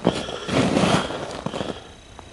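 Footsteps crunching in snow, fading out near the end.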